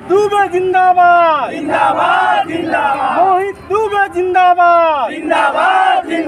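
A group of men chanting political slogans in unison, loud shouted phrases one after another, each ending with a falling pitch.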